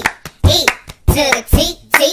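Rhythmic hand claps, about two a second, in time with a song, with sung vocals between them.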